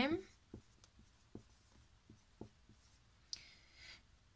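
Whiteboard marker writing on a whiteboard: a string of faint, short stroke and tap sounds as the marker tip moves and lifts.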